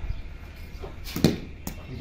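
Two short, sharp knocks of rooftop cricket play, the louder one about a second and a quarter in: a ball bouncing on the concrete and struck with a wooden cricket bat.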